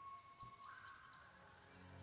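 Near silence: faint outdoor ambience under a soft, sustained musical tone.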